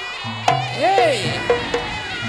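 Reog Ponorogo accompaniment music: a reedy, nasal slompret melody swooping up and falling back, over sharp drum strikes and a low steady hum.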